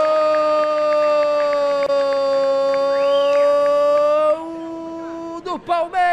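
Football commentator's long goal cry, one "goooool" held at a steady pitch for about four seconds, then carried on more quietly for about another second and breaking off, with a short call and a falling cry near the end.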